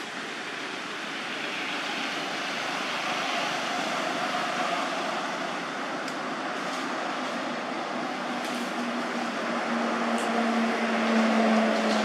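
Steady outdoor background noise, with a low, steady motor hum that comes in about two-thirds of the way through and grows louder toward the end, like an approaching vehicle.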